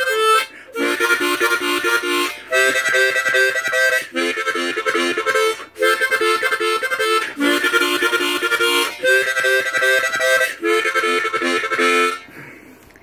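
Two diatonic harmonicas, an F and a B-flat harp held together in a homemade holder, played as one instrument: a run of short chordal phrases of about a second and a half each, with brief gaps for breath between them.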